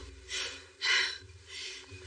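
A man gasping for breath: three sharp, noisy breaths, the middle one loudest, as he wakes with a start.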